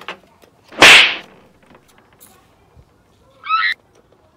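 A person blowing their nose hard into a tissue: one short, loud, rushing blast about a second in. A brief high warbling sound follows near the end.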